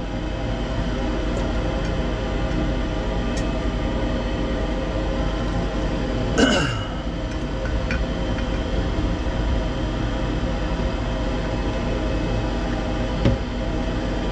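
Steady mechanical hum with several steady tones running under it, and one brief, louder sweep falling in pitch about halfway through.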